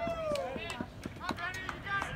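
Several voices calling out and chattering at once, one drawn-out call falling in pitch at the start, with a few brief sharp knocks in between.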